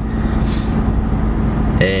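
Steady low rumble of a car's engine and road noise heard from inside the cabin while driving, with a constant low hum.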